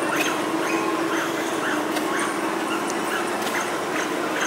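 An animal's short, high whining calls, repeating two or three times a second over a steady low hum of outdoor background noise.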